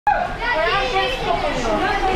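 High-pitched talking and children's voices, with a short phrase spoken in Turkish, over a steady background din.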